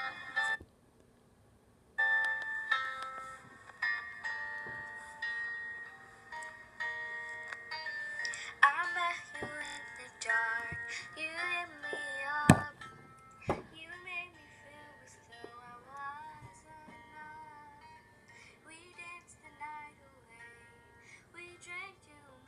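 A recorded pop song with a female singing voice playing back: sustained chords come in about two seconds in after a short silence, and the singing voice joins about eight seconds in. A single sharp knock sounds near the middle.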